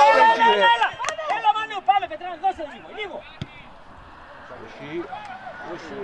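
Loud shouting voices at a football match: a long held call at the start, then a string of shorter shouts that die away after about three seconds. A single sharp knock comes about a second in.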